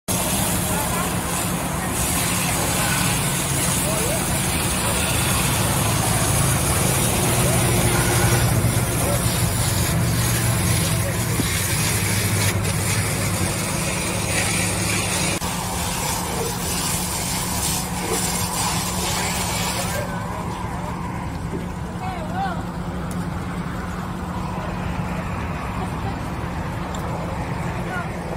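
Fire hose spraying water onto a burning car wreck, a loud steady hiss over a low, even rumble; the high hiss of the spray drops away about twenty seconds in.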